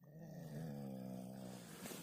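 A man sleeping in the reeds snoring: one long, low, buzzing snore lasting nearly two seconds.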